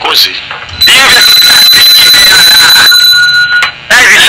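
A person's voice, loud, with a steady high-pitched tone like an alarm beep sounding under it for about three seconds, starting about a second in.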